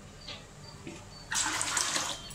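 Water poured in a stream into a wide metal pot already holding water, starting about a second and a half in with a loud splashing rush.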